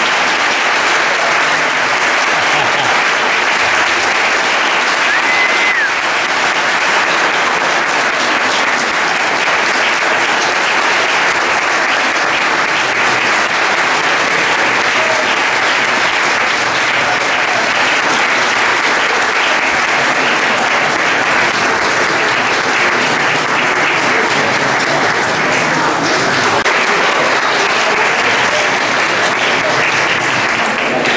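A large audience applauding steadily without a break, the clapping filling a reverberant hall at the end of a band's piece.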